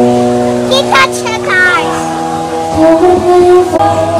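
Upbeat guitar background music with long held notes. A child's voice is heard briefly about a second in.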